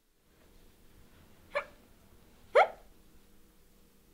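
Two short dog-like yips, a softer one and then a louder one about a second later.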